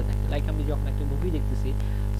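Steady electrical mains hum with a stack of buzzy overtones, the loudest thing throughout, under a voice talking softly in the middle.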